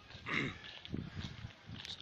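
A short animal call about a third of a second in, with falling pitch.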